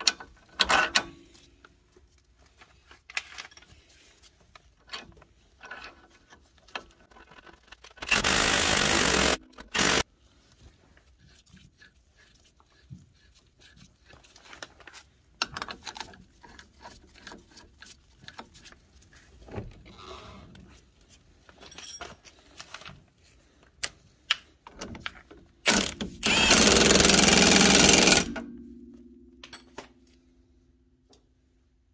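Impact wrench run in two bursts, one of about a second and a half and a longer one of about two and a half seconds near the end, tightening bolts and the hub nut on a car's front hub. Between the bursts come light clinks and knocks of hand tools and bolts.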